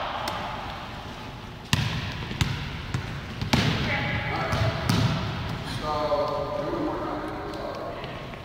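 Volleyballs being struck and bouncing on a hardwood gym floor: about five sharp smacks within the first five seconds, the loudest about two seconds in.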